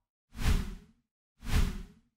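Two whoosh sound effects from an animated logo outro, about a second apart, each swelling up and fading away within about half a second.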